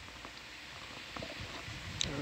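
Quiet control-room background between talk: a steady faint hiss with a few small ticks about a second in.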